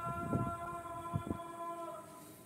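A long pitched note held steady, with even overtones, ending at the close. Low knocks of the handled clip-on microphone come about a third of a second in and again just past a second.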